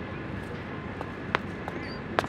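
Athletic shoes tapping and scuffing on a concrete discus ring during the wind-up and start of the turn: a few sharp ticks, the loudest about one and a half seconds in, over steady outdoor background noise.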